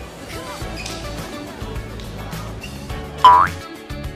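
Background music with a steady beat, and near the end one short, loud comic 'boing' sound effect that glides sharply upward in pitch.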